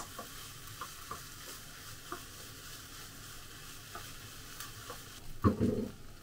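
Fried rice with octopus sizzling in a pan as it is stir-fried: a steady sizzle with light clicks and scrapes of a wooden spatula against the pan. A brief, louder thump comes near the end.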